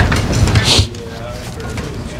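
Rumbling handling noise and a brief rustle on the podium microphones, cutting off sharply just under a second in; quieter low voices follow.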